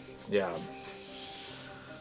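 Hands handling a large cardboard box on a table: a soft rubbing scrape of cardboard lasting just under a second, starting about a second in.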